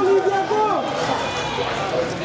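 People talking close by, several voices overlapping in conversation.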